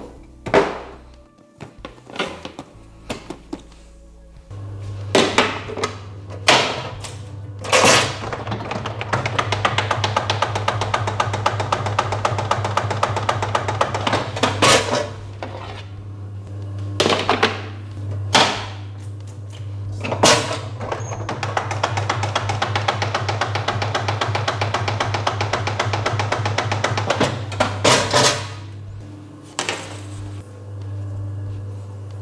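Bun divider-rounder machine at work. Its motor hum starts about four seconds in, and heavy clunks come as the head and lever are worked. Two long spells of fast rattling follow, as the machine cuts and rounds a 30-piece cutting of dough into rolls.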